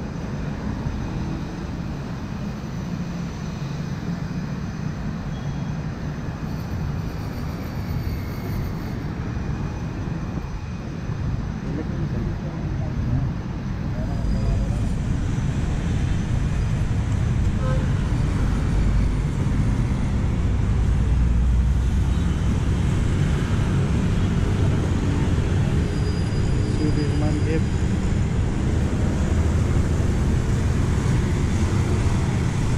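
Steady city road traffic noise, a continuous low rumble of passing cars and buses, growing louder about halfway through.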